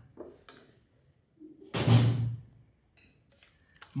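A glass mixing bowl set down on a stainless-steel worktop: one loud, short thump about two seconds in, with a few faint handling knocks before it.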